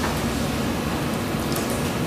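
Room tone: a steady, even hiss with nothing else standing out.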